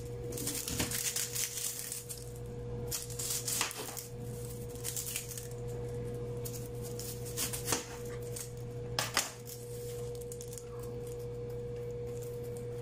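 Chef's knife cutting a red onion on a silicone cutting mat: a scattering of irregular taps and cuts, over a steady low hum.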